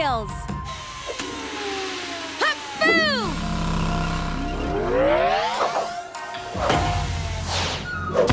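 Cartoon soundtrack: background music with sliding sound effects, falling glides early on, then rising sweeps and a couple of sharp hits.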